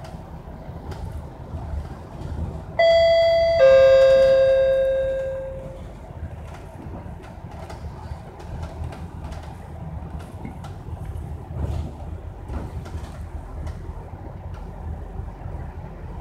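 Two-note ding-dong chime of a bus stop-request bell, a higher note then a lower one ringing out over about two seconds, sounding once about three seconds in. Underneath, the low rumble and small rattles of an MAN A95 (Lion's City) double-decker bus on the move.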